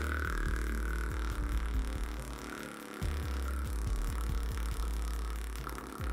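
Beatboxer's inhaled lip roll: lips flapping on a drawn-in breath to make a low, buzzing, throbbing tone that is held steadily. It breaks off briefly about halfway through, then is held again until near the end.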